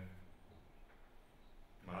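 Faint, even room tone from a lapel microphone, with a man's voice starting again near the end.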